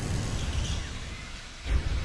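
Logo-animation sound effect: a deep low rumble under a faint hiss, with a faint falling whoosh about half a second in and a fresh low swell near the end.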